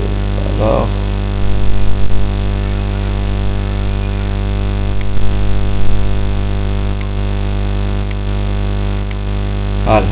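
Steady electrical mains hum from the recording setup, loud and constant, with a few faint mouse clicks later on.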